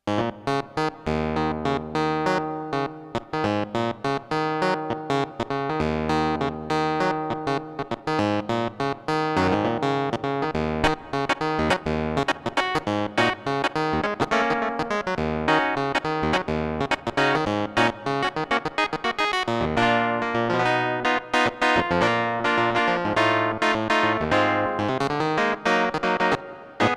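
KORG Minilogue four-voice analog synthesizer playing an electric-piano-like keyboard patch: quick, sharply struck chords and runs over deep held bass notes.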